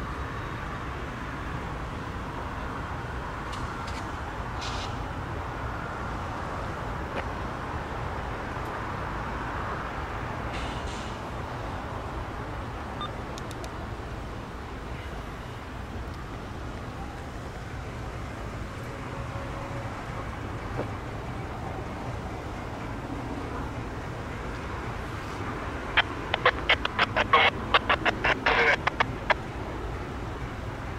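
Steady low rumble of stopped diesel trains idling. Near the end comes a rapid run of sharp clicks, several a second, lasting about three seconds; these are the loudest sound.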